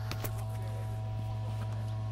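A steady low hum with a few faint steady higher tones beneath it, and a couple of faint ticks just after the start.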